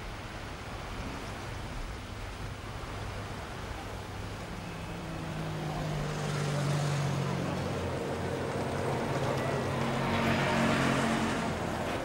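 Outdoor background noise with a motor engine running, its steady low note coming in about a third of the way through and growing louder toward the end.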